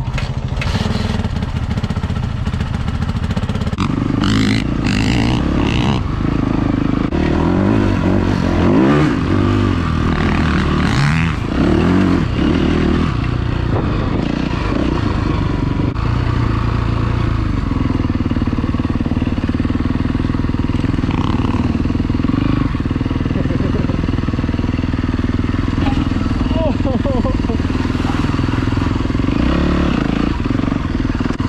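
A motor vehicle engine running. Its revs rise and fall over the first dozen seconds or so, then it runs more steadily.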